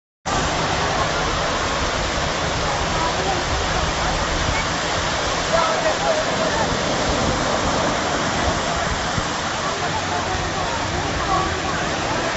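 Dense, steady rushing and pattering from masses of small fish flapping on wet sand at the water's edge, mixed with the wash of shallow surf.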